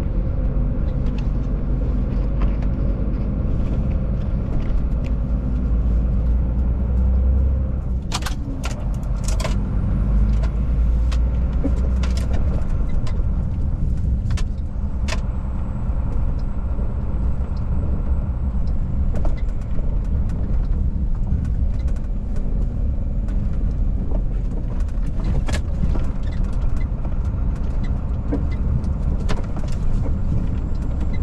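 Truck engine running steadily while the truck drives along, with a low rumble and road noise heard from inside the cab. A few sharp clicks or rattles come through, several of them about a third of the way in.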